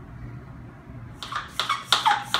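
Small hand pump sprayer being pumped to build pressure: a quick run of short strokes starting about a second in, over a low steady hum.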